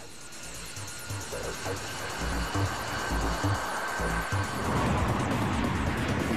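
Jet engines of the YF-22 prototype fighter running up: a roar with a high turbine whine that grows steadily louder toward the end, as the aircraft powers up for takeoff with afterburners lit. A low music beat pulses underneath in the middle.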